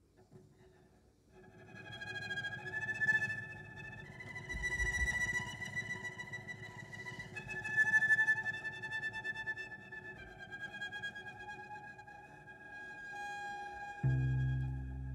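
Cello bowed in long, high, sustained notes, coming in after about a second and a half of near quiet, then moving to a new held pitch every few seconds.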